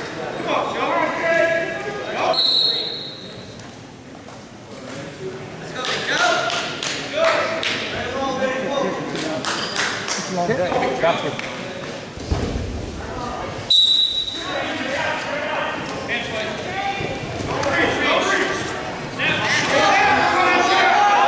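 Voices of coaches and spectators echoing in a school gym, with two short, shrill referee's whistle blasts, the first about two seconds in and the second about fourteen seconds in. The second blast starts the wrestling bout.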